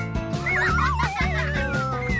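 Upbeat background music with a steady beat, and a cartoon sound effect on top of it: a wavering call that slides downward over about a second and a half.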